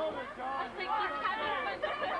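Several people talking at once: overlapping chatter from spectators at a football game, with no single voice clear.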